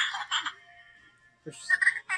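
Grogu plush toy's built-in voice box playing short high-pitched baby-creature noises through its small speaker: one burst at the start and another beginning about one and a half seconds in.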